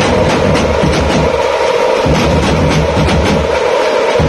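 Loud, fast tamate drumming: many flat frame drums beaten with sticks in a dense, driving rhythm, with large bass drums thudding underneath.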